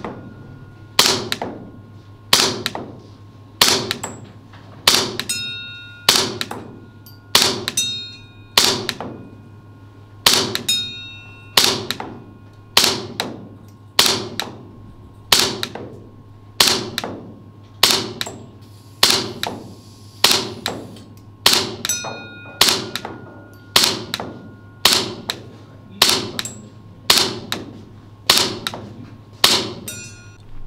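Single shots fired at a steady pace, about one every 1.2 seconds, each a sharp crack with a short metallic ring and room echo, over a low steady hum.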